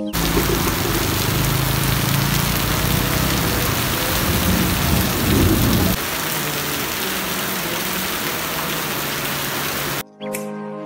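Heavy, steady rain hiss. A deep rumble runs under it for about the first six seconds and cuts off abruptly, leaving the rain alone.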